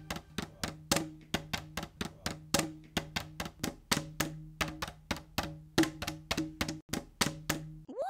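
Plastic bottles struck in a quick, steady rhythm of sharp hits, about four to five a second, over a low steady tone.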